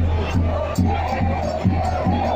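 Football supporters in the stands chanting together over a steady bass drum beat, a little more than two beats a second.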